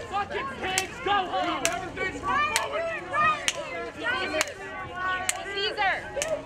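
Crowd of people talking and shouting over one another, with a sharp clap or knock repeating steadily a little faster than once a second.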